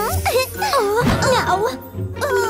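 Bright children's background music with a tinkling melody, with a high cartoon voice making wordless sounds that slide up and down in pitch.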